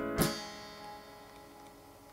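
Electric guitar played through the Helix Native amp simulator strikes a final chord a moment in. The chord rings out and fades away, ending the take.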